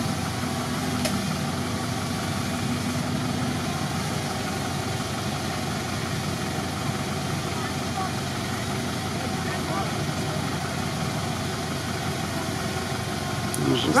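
Old truck engine idling steadily: a low, even rumble with no revving.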